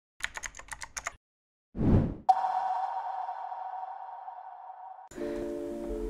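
Opening sound effects: a quick run of typing-like clicks, a short low swell, then a sharp hit with a ringing tone that fades over about three seconds. Steady background music chords come in near the end.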